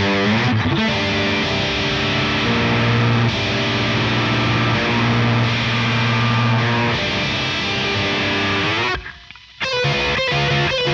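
Yamaha Revstar electric guitar played through a Line 6 Helix amp model with a heavily distorted, grainy tone, riffing and holding sustained chords. The playing breaks off briefly near the end, then comes back in.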